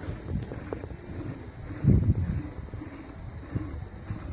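Wind buffeting the microphone in uneven gusts, loudest about two seconds in.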